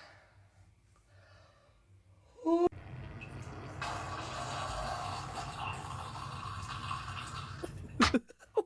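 A man's short rising strained grunt about two and a half seconds in, then about five seconds of a steady, noisy sound of him defecating: a long bowel movement heard on a phone recording.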